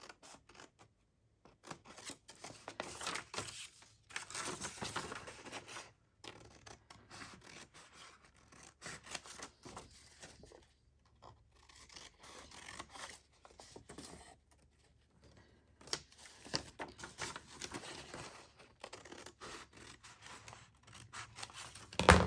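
Scissors snipping through folded paper, trimming the corners off an envelope blank, in spells of cuts with short pauses between, along with the rustle of the paper being handled.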